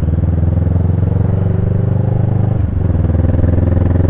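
Motorcycle engine running steadily while riding in traffic, heard from the rider's seat, with a brief dip in the engine note about two and a half seconds in.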